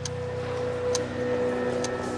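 A clock ticking about once a second over a sustained low music drone.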